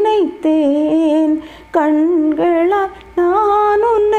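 A woman singing a Tamil devotional song unaccompanied. She sings in held, ornamented notes that waver and glide, in about four phrases with short breaths between them.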